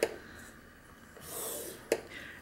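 Scoring stylus drawn along a groove of a scoring board, scoring black cardstock: a light click, then past the middle a soft scrape lasting under a second that ends in another click.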